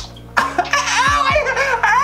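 A person laughing in a high voice, the pitch wavering up and down, starting about half a second in, with music underneath.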